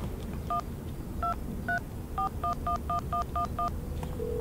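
Mobile phone keypad giving ten touch-tone dialing beeps as a phone number is tapped in: three spaced out over the first two seconds, then seven in quick succession. A low hum from the car cabin runs underneath.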